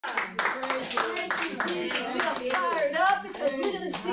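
Hands clapping in a steady rhythm, about four claps a second, with a woman's raised voice calling out over the claps, the voice coming to the fore near the end.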